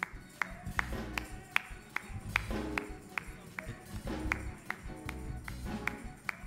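Live church band playing a slow instrumental: bass and sustained keyboard chords under a steady light percussion tick about two and a half times a second.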